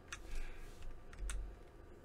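A few faint clicks of a computer keyboard, scattered keystrokes, with a soft low thump just over a second in.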